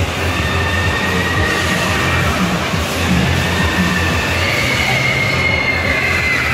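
Steady mechanical rumble with drawn-out high whines from the indoor amusement rides, with background music.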